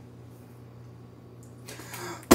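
Quiet room tone with a steady low hum, and a soft noise that rises near the end.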